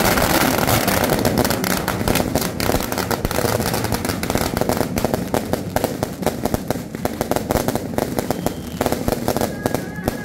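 Strings of firecrackers going off as a dense, rapid crackle of bangs. The crackle thins out into scattered separate bangs toward the end.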